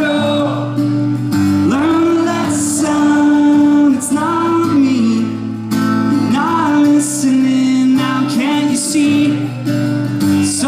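Live acoustic pop-punk song: a man sings into a microphone over a strummed acoustic guitar.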